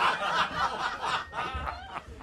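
Several people laughing and snickering in a radio studio, the laughter dying down near the end.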